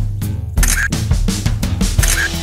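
Children's backing music with a steady drum beat, with a camera shutter click sound effect about three-quarters of a second in.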